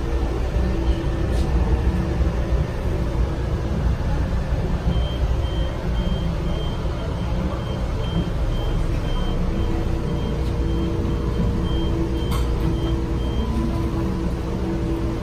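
Steady low hum of a stopped train car, with a high electronic warning beep repeating about one and a half times a second from about a third of the way in until near the end, and a lower pulsing tone joining it in the second half.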